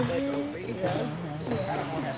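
Live basketball game in a gym: a basketball bouncing on the court and a few short, high sneaker squeaks, mixed with voices from players and spectators.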